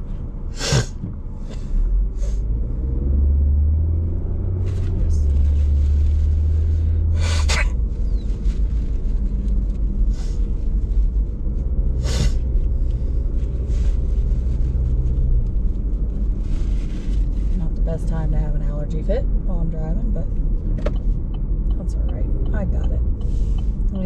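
Steady low rumble of a car on the road, heard from inside the cabin while driving, heaviest for a few seconds early on. A few short sharp noises break in, and there are faint voices near the end.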